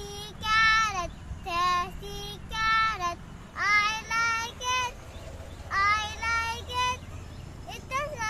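A young boy singing a rhyme in a high child's voice, in short held phrases with brief pauses between them.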